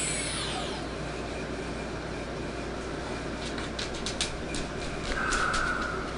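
Quadcopter brushless motors whining unevenly, then spinning down with a falling whine within the first second. The motors are out of sync, one strong and three weak. Afterwards a low hiss remains, with a few light clicks and a short steady beep near the end.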